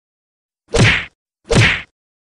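Two identical whack sound effects, each a short punchy hit with a low thud. The first comes a little under a second in and the second about three-quarters of a second later. They are editing effects marking comment cards popping onto the screen.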